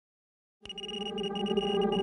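Silence, then about half a second in a steady high-pitched electronic tone over a low drone fades in and swells, an intro sound effect.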